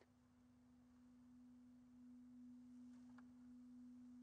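Near silence holding a faint, steady low tone at a single pitch.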